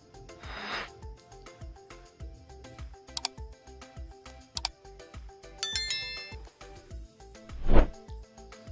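Background music with a steady beat, overlaid with subscribe-button animation sound effects: two sharp mouse clicks, then a bright bell-like ding a little later. A whoosh comes near the start and a louder whoosh just before the end.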